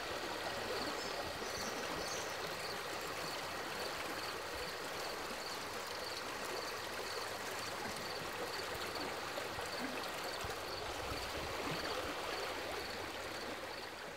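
Steady rushing and gurgling of a flowing stream. A faint high-pitched pulse repeats about twice a second over it and stops about eleven seconds in.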